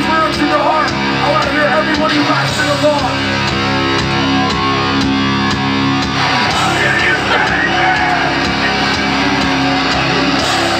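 Hardcore band playing live at full volume: heavily distorted guitars chugging steady chords over fast drums and crashing cymbals, with shouted vocals coming in near the start and again about two-thirds of the way through.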